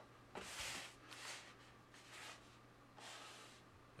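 Faint, soft scraping and rustling of a plastic-wrapped foam meat tray being slid and turned on a table, in several short strokes over a steady low hum.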